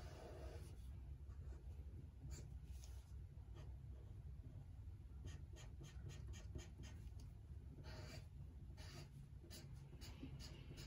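Faint scratching of a felt-tip marker rubbed back and forth over paper, filling in a colored area in short strokes, with a quick run of strokes about halfway through. A steady low hum lies underneath.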